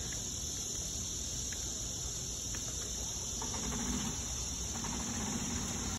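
Steady, high-pitched drone of an insect chorus, with a low rumble underneath.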